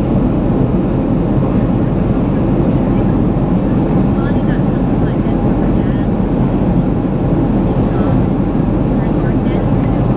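Steady low rumble of a jet airliner heard from inside the cabin at a window seat beside the wing engine: engine and airflow noise as the plane descends toward landing.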